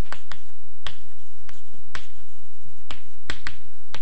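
Chalk tapping and clicking against a chalkboard while writing: a series of sharp, irregularly spaced taps.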